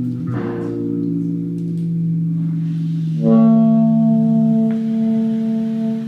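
Live small-group music: fretless electric bass and saxophone holding long sustained notes, with a new, louder held note coming in about three seconds in.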